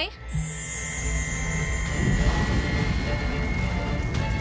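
Cartoon energy-beam power-up sound effect: a steady electric hum and buzz that thickens and grows louder about halfway through as the charge builds.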